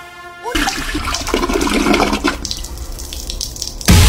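Water rushing and gushing for about three seconds, its hiss thinning about two seconds in. A sudden loud burst of noise cuts in at the very end.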